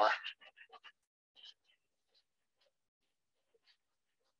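Faint, short scratches of a pen drawing on sketch paper, several close together in the first second and a few scattered ones after, with long quiet gaps between.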